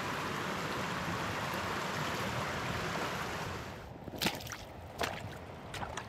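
Steady rush of flowing stream water that fades near four seconds in, leaving a quieter trickle with three sharp clicks.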